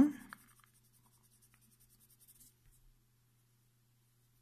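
Coloured pencil scratching faintly on drawing paper in short shading strokes, stopping about three seconds in.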